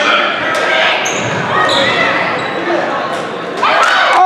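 Live basketball game sound in an echoing gym: the ball bouncing on the hardwood, a few short high sneaker squeaks, and indistinct shouting from players and spectators.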